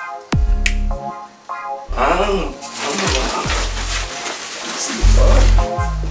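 Electronic funk-style backing music: deep held bass notes, short repeated chord stabs and booming drum hits that drop sharply in pitch.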